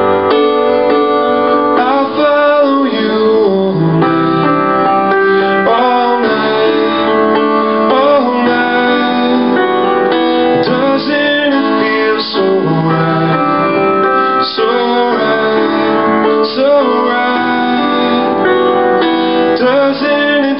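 Upright piano played live, a steady flow of sustained chords and melody notes from a pop song.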